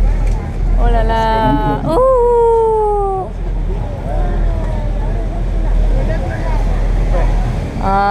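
A high voice calls out a long drawn-out sound from about one to three seconds in. It is held level at first, then slides down in pitch. Under it runs the steady low rumble of a river tour boat under way.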